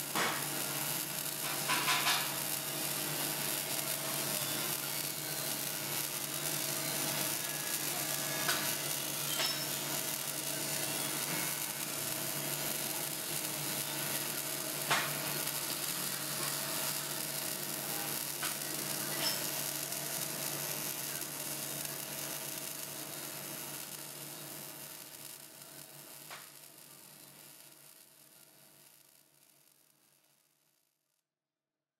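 MIG welding arc sizzling steadily, with a few sharp crackles over a low steady hum. It fades out over the last several seconds.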